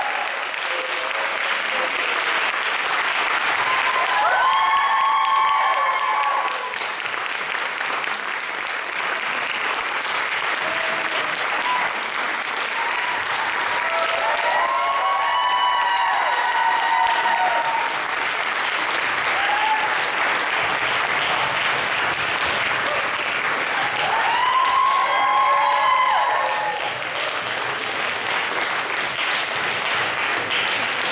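Audience applauding steadily, with high shouted cheers rising over the clapping three times: about five seconds in, midway, and near the end.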